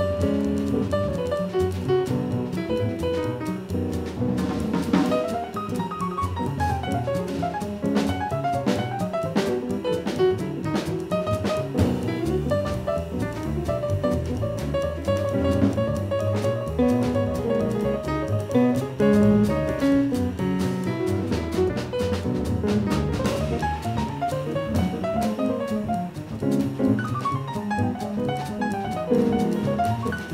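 Live acoustic jazz played by upright bass, piano and drum kit together. The drums keep time on the cymbals while the piano plays runs over a walking bass.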